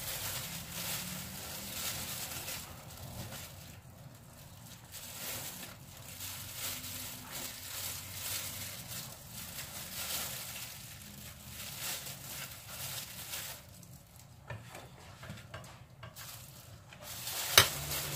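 Banana leaves and disposable plastic gloves rustling and crinkling, with a spoon scraping in a steel bowl, as grated taro mixture is scooped onto the leaves for wrapping. A sharp click near the end.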